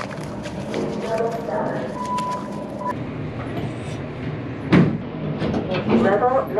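Indoor room noise with faint background voices, a single steady beep lasting just under a second about two seconds in, and one sharp knock near the end.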